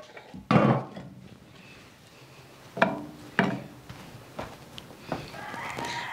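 Glazed clay cazuelas set down and shifted on a comal: a heavy scraping knock about half a second in, then two sharper knocks near the middle, with light handling noise between.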